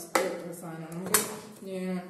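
Two sharp clacks about a second apart as a Philips food processor's disc attachments are handled and knocked against the bowl and the others.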